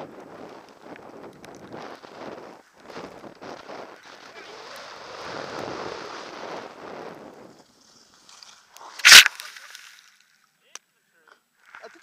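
Skis hissing and scraping through snow in a series of uneven swishes. About nine seconds in comes a single sharp, loud thump as the skier falls and the helmet camera hits the snow.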